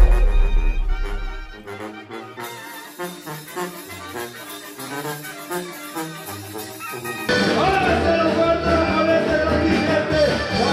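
Background music laid over an edited title card. A deep boom at the start fades over about a second and a half under soft music with stepping notes. About seven seconds in, louder music with held notes cuts in suddenly.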